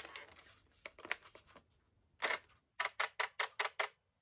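Fuji Rensha Cardia eight-lens camera firing its sequence: one louder click a little after two seconds in, then a quick run of about seven sharp shutter clicks, roughly six a second, as the lenses expose one after another.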